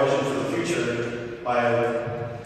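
A man's voice speaking at a microphone in two long, drawn-out stretches of steady pitch.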